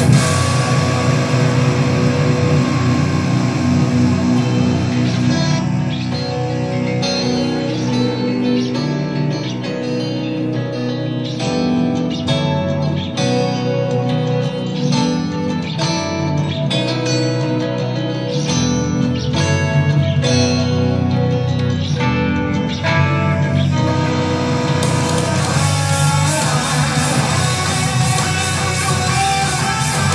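Amplified electric guitar played live: ringing chords at first, then a long run of quick, separate notes through the middle, and sustained chords again near the end.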